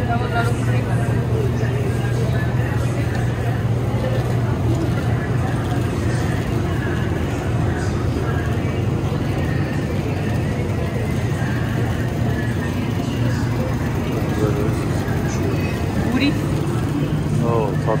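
Supermarket ambience: a steady low hum from the refrigerated display cases, under indistinct background voices.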